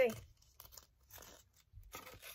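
A few faint, short rustles and crinkles of a small clear wrapping sheet being worked by hand around a wooden skewer, as the thin sheet tears a little.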